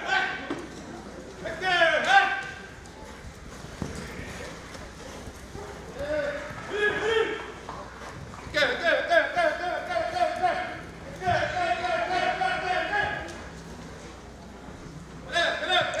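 A man's voice in long, drawn-out shouts, several held on one pitch for a second or two, with quieter stretches between them.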